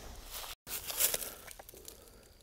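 Rustling and crinkling handling noise with a few light clicks, from hands working a trail camera strapped to a tree, broken by a brief dead gap about half a second in.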